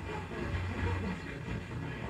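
Background music from an FM radio broadcast playing through a car radio's speaker, in a pause in the news reading.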